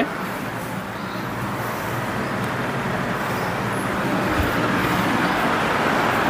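Steady road traffic noise coming in from the street, slowly growing louder, with a low hum underneath.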